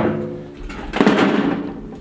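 A sheet of corrugated metal roofing being handled: it flexes and clatters with a ringing, wobbling metallic tone. There is a louder clatter about a second in.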